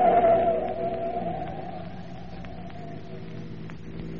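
Sound effect of car tyres squealing through a fast turn: one long wavering screech, loudest at the start and fading out after about three seconds, over the steady hum of the car's engine.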